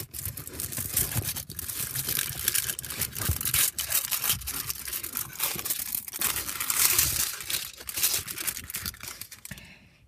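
Aluminium foil chocolate-bar wrapper crinkling and tearing as it is peeled open by hand: a busy, continuous run of crackles that stops just before the end.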